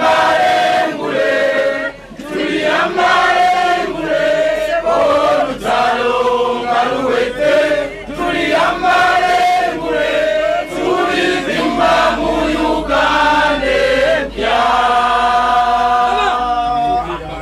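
A crowd of voices chanting and singing together in unison, in repeated short phrases with held notes.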